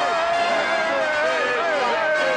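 Excited voices shouting and cheering in long drawn-out calls, with music playing underneath.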